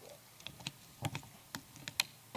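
Faint, irregular small clicks and knocks of a handheld microphone being handled, about seven in two seconds.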